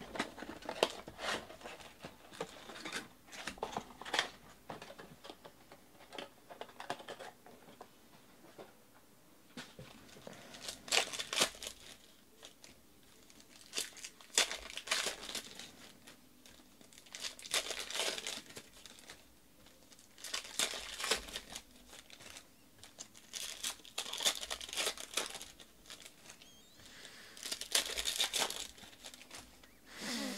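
Foil trading-card packs being torn open and their wrappers crinkled, in crackly bursts every few seconds, with lighter clicks and rustles of packs and cards being handled in between.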